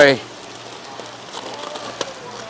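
Wet plastic fish-shipping bags crinkling with a soft dripping patter as they are handled.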